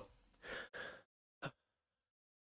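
A man's faint breaths between sentences: two short, soft exhalations about half a second in, then a small mouth click, with silence around them.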